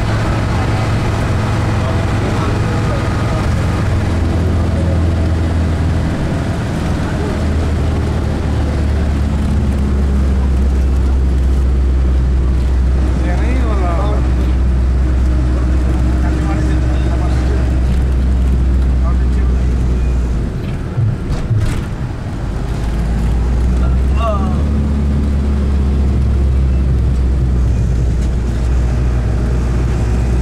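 Steady low drone of a moving road vehicle heard from inside its cabin, engine and road noise, easing briefly about two-thirds of the way through.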